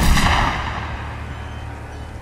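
A single loud gunshot that hits at once and dies away in a long echo, over a low rumble.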